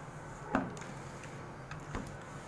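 A single sharp knock about half a second in, with a fainter tick near the end: handling noise as the crocheted piece and the crochet hook are moved about on a wooden tabletop.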